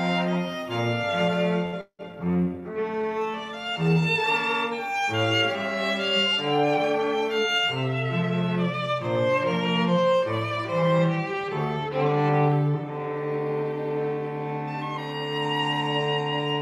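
A small ensemble of violins and cello playing a classical piece together, with moving bowed notes over a low cello line. The sound cuts out for an instant about two seconds in, and the last few seconds settle into long held notes.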